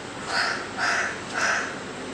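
A crow cawing three times, about half a second apart.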